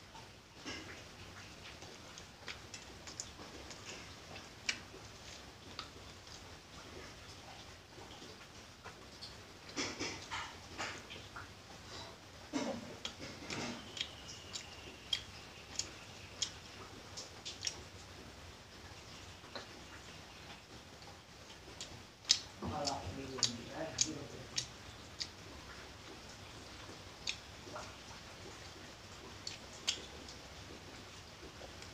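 Quiet eating sounds from chewing a soft mango-and-bread sandwich: scattered small mouth clicks and lip smacks, with a few short hummed voice sounds, about a third of the way in and again later.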